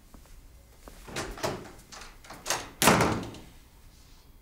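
A few light knocks and thuds, then a door shutting with a loud bang about three seconds in.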